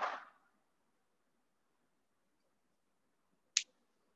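Near silence, room tone only, broken by a single short, sharp click near the end.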